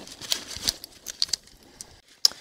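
A white cleaning cloth rustling in gloved hands while wiping a small metal gun part, with a few light ticks and crackles in the first second and a half, then quieter.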